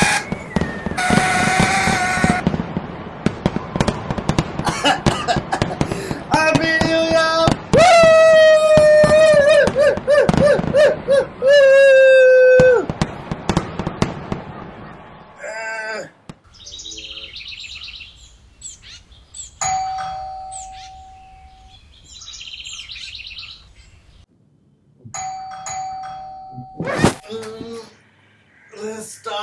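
Party blowout horn blown hard, a loud buzzing tone that wavers in pitch and cuts off suddenly. It is followed by quieter, mixed sounds that include two short steady beeps.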